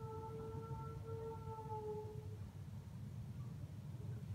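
A woman humming one steady, slightly wavering note that fades out about two seconds in, over a faint low background hum.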